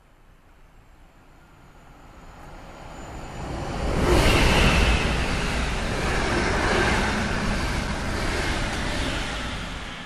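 RegioJet locomotive-hauled passenger train passing through the station at speed without stopping. The rumble and rush build up over a few seconds, are loudest about four seconds in as the locomotive goes by, then hold steady as the coaches roll past and begin to fade near the end.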